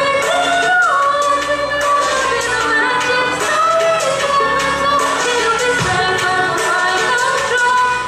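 A young female vocalist sings a melody into a microphone, accompanied by violin, her voice gliding and bending between notes.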